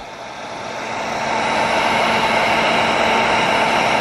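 Electric heat gun running: a steady rush of blown air over a constant motor hum, growing louder over the first two seconds and then holding steady.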